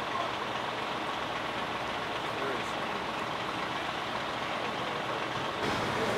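Steady low noise of idling coach buses, with no distinct events, shifting slightly near the end.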